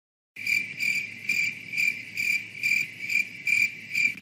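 Cricket-chirp sound effect: a high, even chirp repeated about twice a second, nine times. It is the stock awkward-silence cue.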